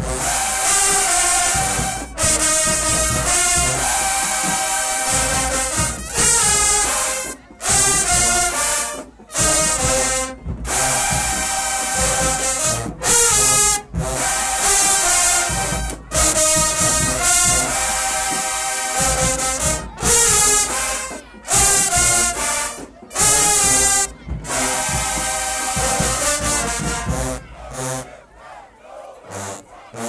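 Large marching band's brass section, trumpets, trombones and sousaphones, playing loud held chords in short phrases that cut off sharply, with brief gaps between them. The band drops away near the end.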